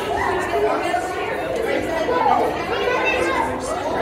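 Indistinct chatter of several visitors' voices, reverberating in a large indoor hall.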